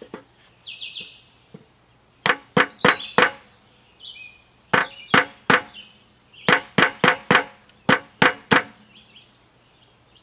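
Hammer blows on a wooden block set on a steel sleeve, driving a new bearing onto an air conditioner fan motor shaft: about fourteen sharp knocks in three quick bursts. Birds chirp in the pauses between the bursts.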